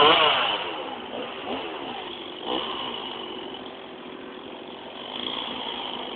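Two-stroke chainsaw engine revving hard at the start, its pitch swinging up and down, then running on more steadily with short rev-ups a couple of times and again near the end.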